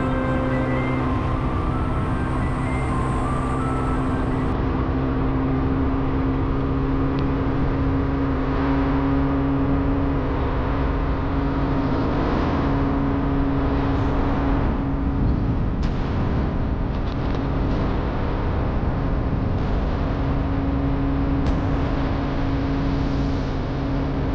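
Steady driving sound of a vehicle on the road: a constant low engine hum with tyre and road noise. Oncoming traffic passes, with a large lorry going by about halfway through.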